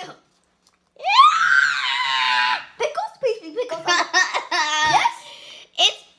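A child's long, high-pitched squeal of laughter starting about a second in, followed by choppy giggling that stops near the end, after a short cough at the start.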